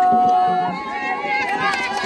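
A woman's voice holds one long high note for about a second, then several women's voices sing and call out together.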